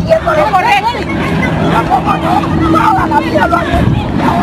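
Several people talking over one another outdoors, with their voices overlapping into a hubbub and no one voice clear. A steady faint hum runs beneath for a couple of seconds mid-way.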